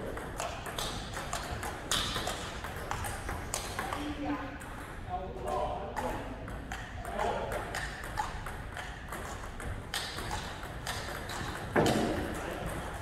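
Table tennis balls clicking off bats and tables in rallies, with more clicks from neighbouring tables and a louder hit near the end; voices in the background.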